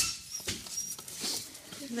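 Long-coated German Shepherd puppies moving about on loose wood shavings, a light scuffling patter with a sharp knock right at the start and a couple of faint, short high squeaks.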